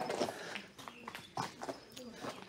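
Footsteps on a hard surface: several light, sharp knocks at uneven spacing.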